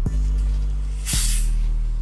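Background music with a steady beat; about a second in, a short hiss of gas escaping as the cap is twisted off a 2-litre bottle of cola.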